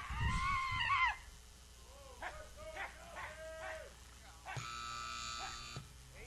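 A loud rising-and-falling call about a second long at the start, then several shorter calls. Near the end comes a flat, steady horn-like tone lasting about a second.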